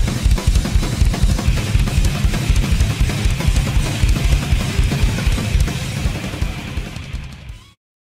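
Heavy metal drum cover on a drum kit: rapid bass drum strokes under a steady wash of cymbals, with snare hits. The playing fades out and stops shortly before the end.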